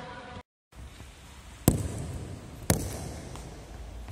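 Two sharp floorball stick-on-ball hits about a second apart, ringing in a large indoor sports hall. The sound cuts out briefly near the start.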